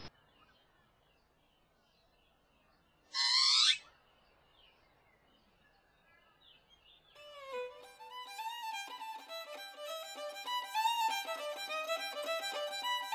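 A pied butcherbird gives one loud, short whistled call about three seconds in, over faint background. From about seven seconds a violin plays a melody of quick notes with slides.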